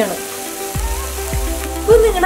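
Thick red chili masala paste sizzling as it fries in oil in a pan, over background music with a steady beat.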